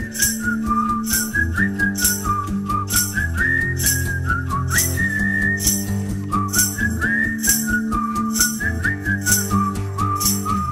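Live whistled melody over strummed acoustic guitar chords, with light percussion ticks about twice a second keeping time.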